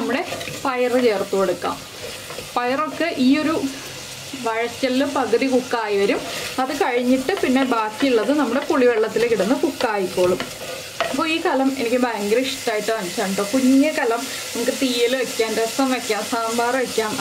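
Sliced shallots, green chilli and curry leaves frying in oil in a clay pot, sizzling while a wooden spatula stirs and scrapes through them.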